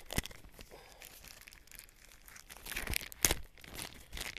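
Paper and card packaging handled and crinkled, with scattered sharp crackles, quiet through the middle and a cluster of louder crackles about three seconds in.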